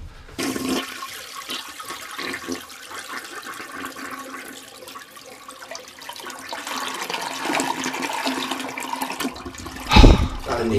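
Stock sound effect of a toilet flushing: water rushing and swirling round the bowl. It starts suddenly and runs for about nine seconds, growing louder in the later part.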